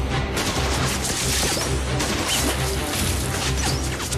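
Rushing whitewater river, a dense steady roar of water, with a dramatic music score underneath.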